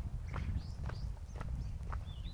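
Footsteps on a concrete floor: a handful of short, sharp steps over a steady low rumble on the microphone.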